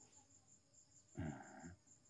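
Faint outdoor insect chirping: a high, thin note pulsing steadily several times a second. A brief murmur from a person comes a little past a second in.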